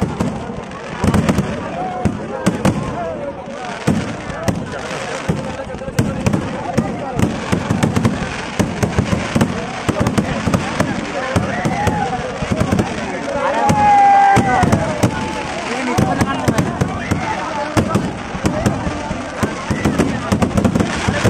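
Aerial fireworks going off in quick succession, many sharp bangs and crackles, with the voices of a crowd underneath.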